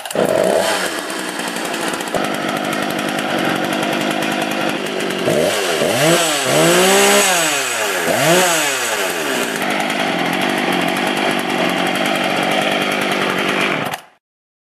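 Husqvarna 154 chainsaw's two-stroke engine running after a rebuild with a sanded cylinder and a new piston and ring. It idles, is revved up and back down about three times in the middle, then returns to idle.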